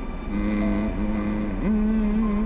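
A man's voice singing a slow wordless lullaby in long held notes, starting about half a second in and stepping up in pitch near the end, over the steady low rumble of a car cabin.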